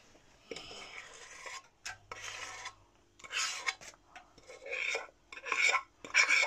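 A spoon scraping the last of the sticky honeycomb toffee mixture out of the pan, in several short scrapes over a faint steady hum.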